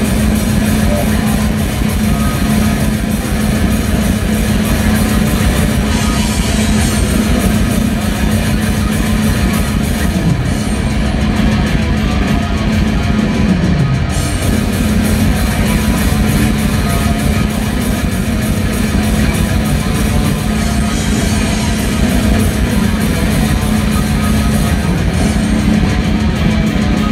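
Live melodic death metal band playing loud through a festival PA: distorted electric guitars over bass and fast, dense drumming. A low held note slides down in pitch about halfway through.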